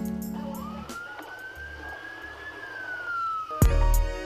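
A single siren wail, rising slowly and then falling away, as music fades out. Music with a heavy beat starts near the end.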